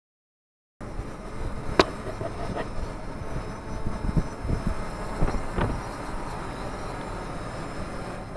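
After a brief dead silence, a Toyota pickup drives over a rough dirt track. Steady road and cab rumble with several sharp knocks and rattles from the bumps, the loudest about a second in.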